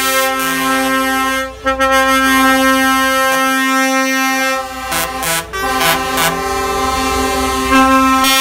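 Truck air horns from a passing convoy of Volvo FH trucks, sounding long, overlapping blasts in several pitches over the low rumble of the engines. The horns break off briefly about a second and a half in and again around five seconds.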